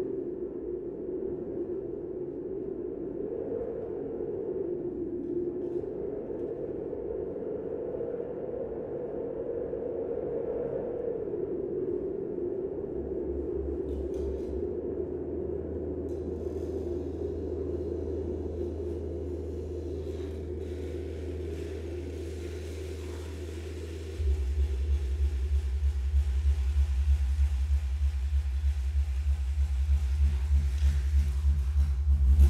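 Experimental electronic music made of soft, wavering filtered noise and sine tones. A steady low bass tone enters about 13 seconds in and gives way about 24 seconds in to a louder, throbbing low tone.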